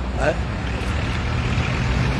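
A motor vehicle's engine running steadily, heard as a low hum.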